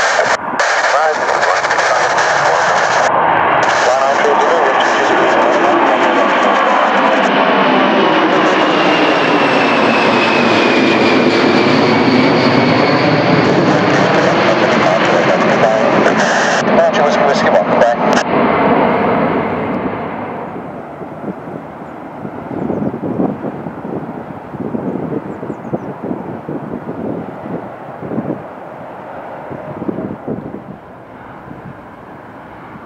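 Boeing 747SP's four Pratt & Whitney JT9D turbofans at take-off power as the jet climbs out overhead: a loud jet roar with a sweeping, phasing quality and a whine that falls in pitch as it passes. About twenty seconds in the sound drops and fades as the aircraft climbs away.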